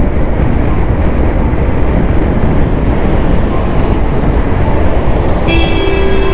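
Steady wind and road rumble from a vehicle travelling at speed on a highway. Near the end a vehicle horn starts sounding, one steady note.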